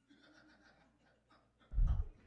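Faint low murmuring, then near the end a short, loud, muffled low thump picked up by the pulpit microphone, as from handling or a breath close to it.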